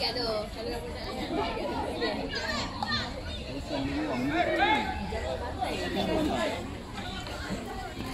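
Several young voices calling out and chattering over one another, with the most calls in the middle of the stretch.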